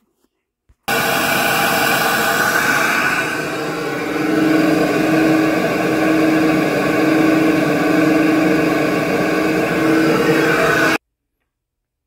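SuperFlow flow bench running, drawing air through a Holley 850 cfm four-barrel carburetor on a 340 intake manifold at about 28 inches of water test pressure. It makes a loud, steady rushing roar, and a steady hum joins it a few seconds in. The sound starts abruptly about a second in and cuts off about a second before the end.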